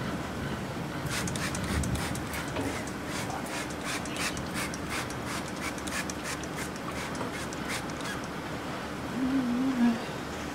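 Oil spray bottle spritzing in quick short bursts, several a second, as the inside of a smoker's firebox is coated with oil for seasoning.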